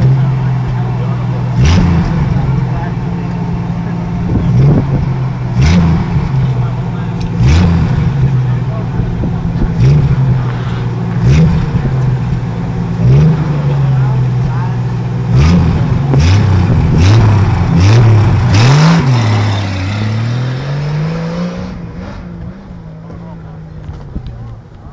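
Six-cylinder engine of a modified Jeep CJ5 off-roader idling and being blipped again and again, the pitch jumping up and falling back every second or two, about a dozen times. Near the end it is held through one longer, slower rise before fading.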